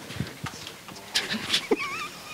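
A wireless microphone being handled as it is passed to a questioner: scattered clicks and rustles, then a brief warbling squeal near the end.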